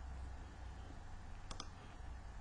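Two computer mouse clicks in quick succession about one and a half seconds in, over a faint low hum.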